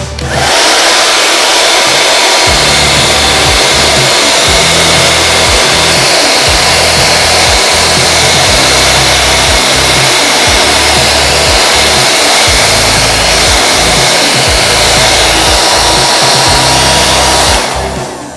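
Handheld vacuum cleaner switched on, its motor running with a steady whir while it sucks up small bits of cardboard debris, then switched off near the end and winding down over about a second.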